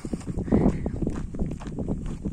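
Footsteps on a dirt track, a run of short irregular crunches, with wind rumbling on the microphone.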